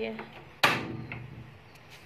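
One sharp metallic clank with a brief ringing tail, a metal pan knocked onto the stove as it is set in place.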